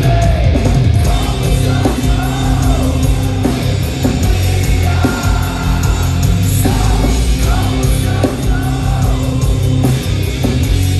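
Industrial metal band playing live at full volume: distorted electric guitars, bass and drums with a sung vocal line over them.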